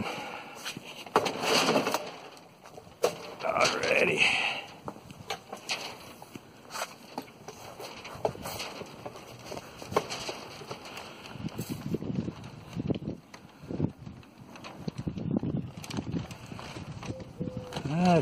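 Tyvek sail fabric crackling and rustling as the wind works it, with scattered clicks from handling and footsteps. An indistinct voice is heard briefly in the first few seconds.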